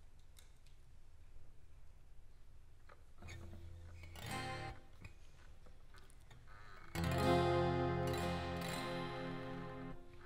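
Twelve-string acoustic guitar opening a song: a soft chord about three seconds in, then a loud, full strummed chord at about seven seconds that rings on.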